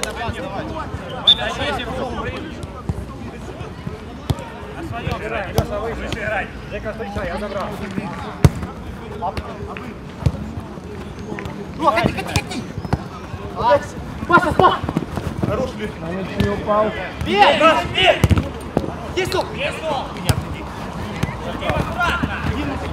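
A football kicked on an artificial-turf pitch during a small-sided match: single sharp thuds of passes and touches every few seconds, the loudest about a second in, around eight seconds and near eighteen seconds. Players' shouts and calls come through in between, more of them in the second half.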